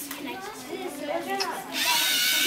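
Lego Mindstorms robot's electric drive motors start about three-quarters of the way in, a sudden steady whirring of motors and gears that sets the robot off from its start position, over children's chatter.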